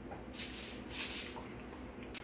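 Sheets of aluminium foil rustling and crinkling as they are handled, in two short bursts about half a second and a second in.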